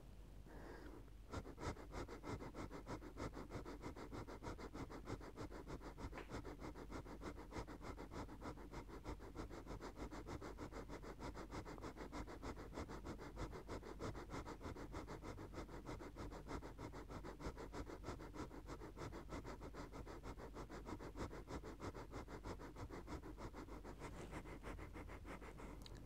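Kundalini yoga Breath of Fire: a man's rapid, rhythmic, even breathing through the nose, each quick exhale a short puff, faint and steady, starting about a second in.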